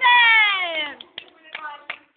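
A high-pitched, cat-like voice in one long downward-sliding wail lasting about a second, followed by a few short sharp clicks.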